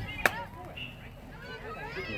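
A single sharp knock, much louder than the rest of the sound, about a quarter second in, just after a dull low thump.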